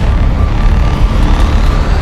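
A vehicle driving over desert sand, heard from inside the cab as a loud, steady low rumble. A thin rising tone sweeps steadily higher from about halfway through.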